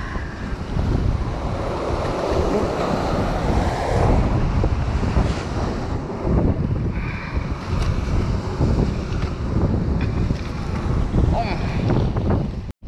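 Sea surf breaking and washing against a rocky shore, with gusty wind buffeting the microphone in uneven low rumbles.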